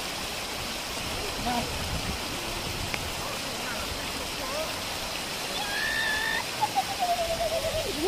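Shallow rocky stream rushing over stones in a steady wash, with people's voices calling out over it in the last couple of seconds.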